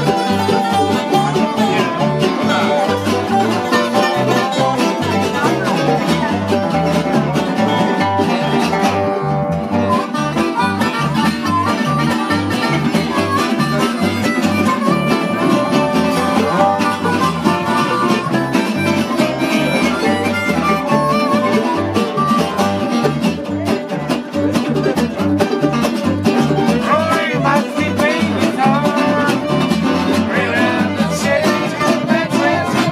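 A live acoustic country band playing together: fiddle, acoustic guitar and resonator guitar, with a steady bass pulse.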